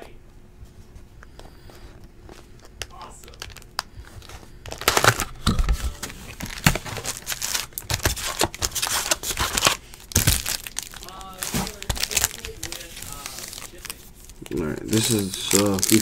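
Foil-wrapped trading-card packs from a 2018 Topps Stadium Club baseball hobby box crinkling and rustling as they are pulled out and handled. The dense crackling starts about five seconds in, after a quiet start, and eases off near the end.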